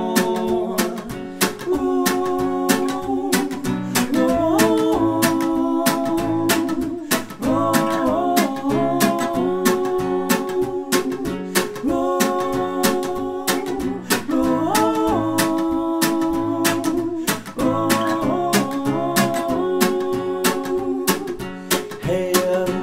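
Live acoustic reggae: a steel-string acoustic guitar strummed in a steady rhythm, with two men's voices singing long held notes in repeating phrases over it.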